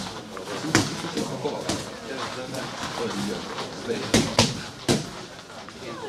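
Boxing gloves landing punches in sparring: a few sharp smacks, three of them in quick succession about four seconds in, with low voices in the gym underneath.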